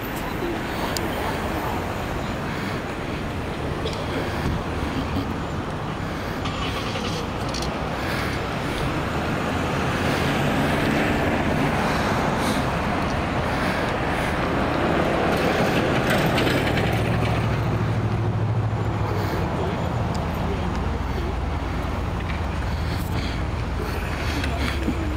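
Street traffic noise with a car engine running nearby; the sound swells about ten seconds in, and a steady low engine hum comes in after that. Indistinct voices sit under it.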